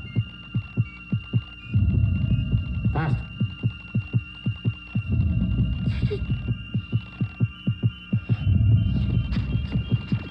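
Film sound effect of an amplified heartbeat, racing and quickening to several beats a second, over a steady high electronic tone, with a deep low swell every three seconds or so.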